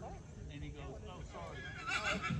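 A horse whinnying: a high, wavering call that starts near the end.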